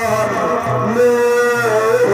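Amplified violin playing a slow, ornamented melodic phrase of long held notes that slide between pitches, over a low sustained accompaniment.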